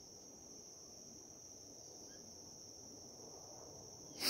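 Near silence with a faint, steady high-pitched drone of insects such as crickets.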